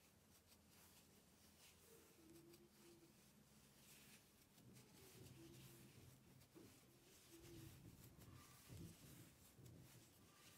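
Near silence, with faint soft rubbing of yarn drawn over a wooden crochet hook as loops are pulled through.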